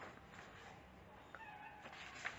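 Near silence: faint room noise.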